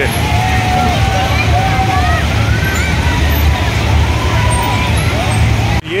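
Busy fairground noise: a steady low mechanical rumble from the running ride machinery, with crowd voices over it. The sound breaks off briefly near the end.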